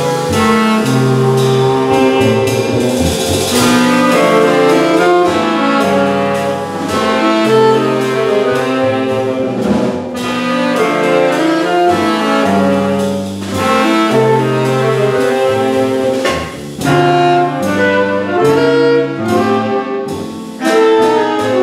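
Live jazz ensemble of saxophones, clarinets and double bass playing, several reed instruments holding long notes together over the bass line.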